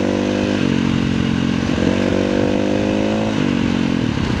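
KTM 350 EXC-F single-cylinder four-stroke enduro engine running steadily as the bike cruises along a dirt track. Its pitch shifts slightly about half a second in and again near the end.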